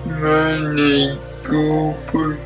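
Slow, drawn-out speech with stretched, hard-to-make-out syllables, the dysarthric speech of a speaker with cerebral palsy, in two long phrases over quiet background music.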